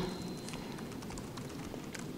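Faint typing on a laptop keyboard, a run of light key clicks over room tone.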